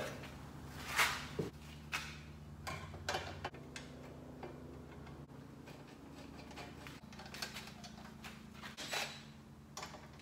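Light plastic clicks and knocks as a small generator's recoil-starter cover is handled and fitted back onto the engine housing, with a few sharper taps about one, two and three seconds in and again near nine seconds.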